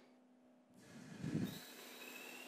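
Faint electric injection pump starting to run as water is pumped into a concrete joint: a brief low swell about a second in, then a faint steady high whine with a light hiss.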